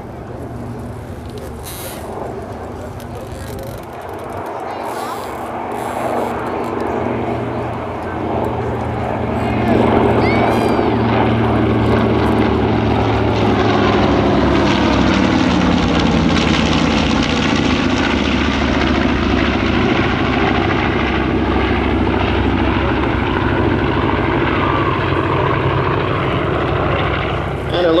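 A diamond formation of piston-engined warbirds (a B-25 Mitchell, a Hawker Sea Fury, a Spitfire replica and a Grumman F7F Tigercat) flying past. The propeller and engine drone grows louder over the first ten seconds, then stays loud, and its pitch drops as the formation passes.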